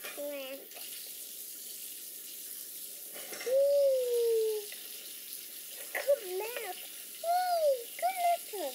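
A toddler's voice making wordless sing-song sounds in sliding tones, the longest and loudest a drawn-out falling note a little over three seconds in, with shorter arched ones near the end, over a steady background hiss.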